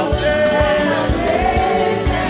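A live gospel worship song: a choir and congregation sing together over a band with a steady drum beat.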